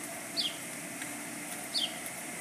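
A bird giving two short, high chirps that fall in pitch, about a second and a half apart, over a steady background hum.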